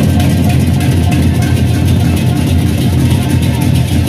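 Gendang beleq ensemble playing: large double-headed barrel drums and hand cymbals struck together in a fast, dense rhythm, the cymbals coming in suddenly at the start.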